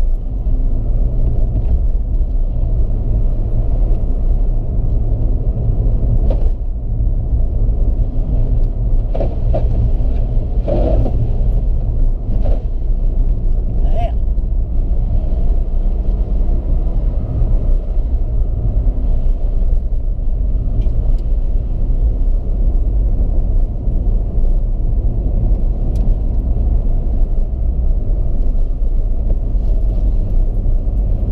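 Car driving on a wet road, heard from inside the cabin: a steady low rumble of engine and tyre noise, with a few brief higher sounds around the middle.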